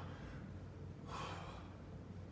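A man breathing hard from exertion during a weighted squat circuit, with one forceful exhale about a second in, over a steady low hum.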